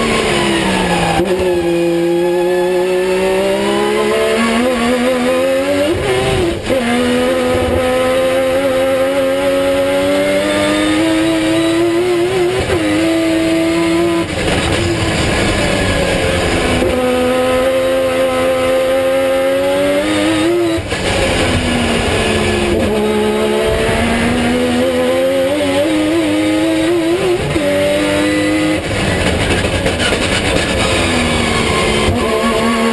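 Mazda RX-7 time-attack race car's engine at full racing pace, heard from inside the cabin. The note climbs under hard acceleration, drops sharply at gear changes and falls away under braking, again and again.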